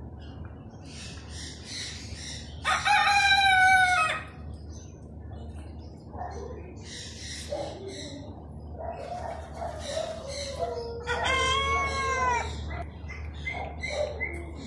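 Rooster crowing twice: a loud crow about three seconds in and a second, arching crow about eleven seconds in. Short, high bird chirps repeat in between.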